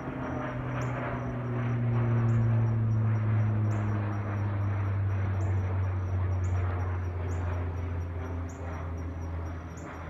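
Airplane engines droning overhead, a low hum whose pitch slides slowly downward as the plane passes, loudest a couple of seconds in and then slowly fading. A short high chirp repeats about once a second throughout.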